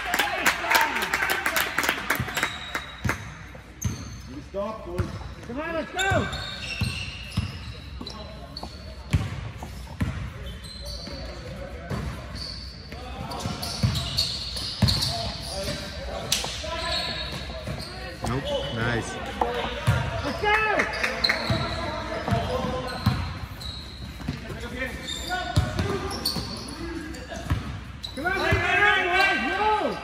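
Basketball game in a large gym: a ball bouncing on the hardwood court in scattered sharp knocks, with players' and spectators' voices carrying and echoing in the hall.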